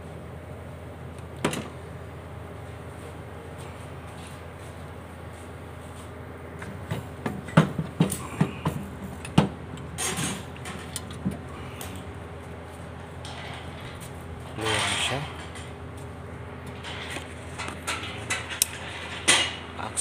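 Scattered sharp clicks and knocks of tools and engine parts being handled while the top of an engine is dismantled, bunched about a third of the way in and again near the end, over a steady low hum.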